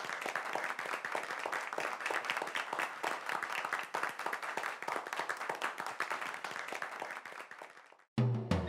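Audience clapping and applauding right after a live band's song ends, the applause thinning and fading away near the end.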